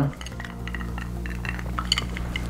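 Ice clinking lightly in a glass of Manhattan as it is tipped for a sip, a few small ticks near the end, over a steady low hum.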